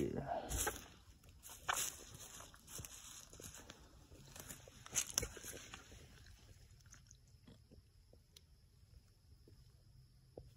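Rustling and crackling of dry leaf litter and twigs as someone moves through brush, in short scattered crackles, a few louder ones in the first half, thinning out after about six seconds.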